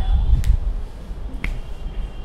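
Two sharp clicks about a second apart, over a low rumble of room noise.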